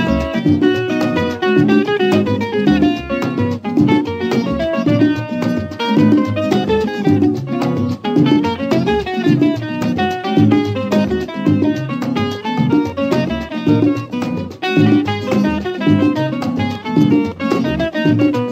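Instrumental break of a Latin dance number: a plucked string instrument plays quick runs of notes over the band's steady bass and rhythm.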